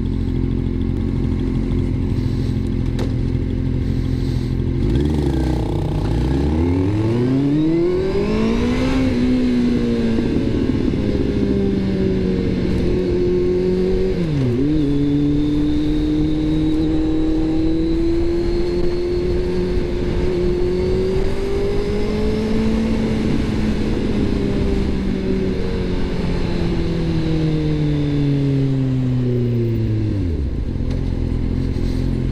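Kawasaki Z750R's inline-four engine idling at a standstill, then pulling away about five seconds in, the revs climbing and dropping sharply at gear changes about 9 and 14 seconds in. It holds speed through the middle, and the revs fall as the bike slows near the end.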